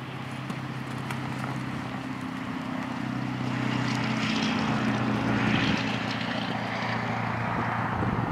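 A steady engine drone with a low hum, growing louder through the first half and easing slightly near the end.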